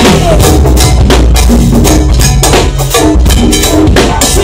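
Live band playing loud, driving music: drum kit and hand percussion over a heavy bass line, with held keyboard or horn notes.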